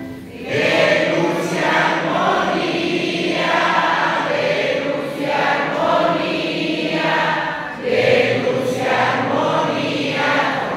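Church choir singing a hymn in long sung phrases, with short breaks about half a second in and again just before the eighth second.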